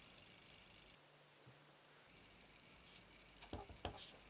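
Near silence: quiet room tone, with a few light taps near the end from a clear stamp being handled and lifted off paper.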